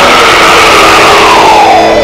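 Dense, loud distorted heavy metal music, with a high held note that slides down in pitch over the last half second.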